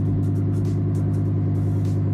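Lamborghini Huracán Evo's V10 engine idling steadily.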